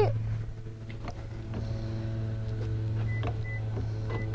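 Footsteps on pavement, light taps about twice a second, over a steady low hum.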